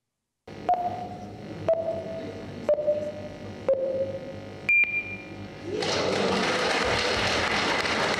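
Electronic voting system in a council chamber counting down: four short beeps about a second apart, each a little lower in pitch, then one higher beep marking the end of the voting time. About a second later a steady wash of noise from the hall follows.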